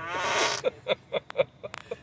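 Tesla's Emissions Testing Mode fart sound played through the car's speakers: a rippling, sputtering fart for about the first half-second, then a quick run of short pops.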